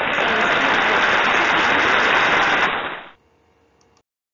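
Applause sound effect for a correct answer: a dense, loud clatter of many hands clapping that cuts off suddenly about three seconds in.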